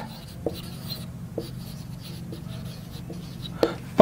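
Marker pen writing on a whiteboard: faint scratches and a few light taps of the tip against the board, over a steady low room hum.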